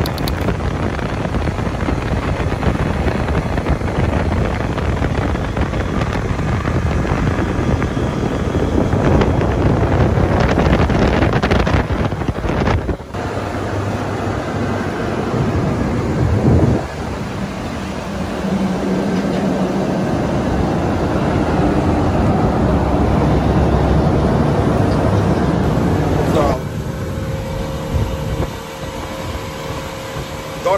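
A motorboat underway: wind buffeting the microphone and the rush of water over the outboard engine running. The sound changes abruptly several times, and a steadier engine hum shows through near the end.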